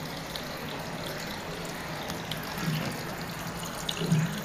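Water running in a steady stream from a wall tap, splashing onto a cat's head and into a plastic container below.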